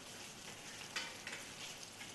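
Faint kitchen work sounds: a steady hiss with a few light clinks of a metal utensil against a metal pan, the clearest about a second in.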